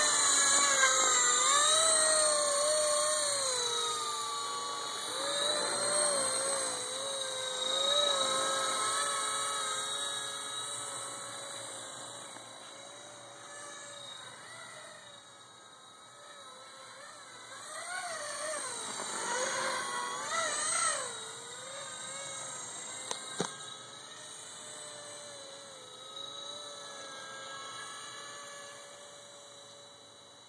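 Electric Honey Bee FP V2 RC helicopter, fitted with a CP3 Super 370 main motor and a direct-drive tail motor, whining in flight, its pitch wavering with the throttle. Loudest at first, it fades, swells again for a few seconds past the middle, then fades. A single sharp click comes about three quarters of the way through.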